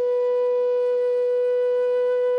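A flute holding one long, steady note in instrumental music.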